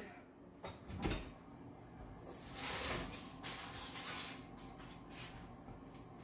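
Wall oven door opened with a couple of clunks about a second in, then a few seconds of scraping and rustling as a foil-covered baking dish is pulled out on its rack.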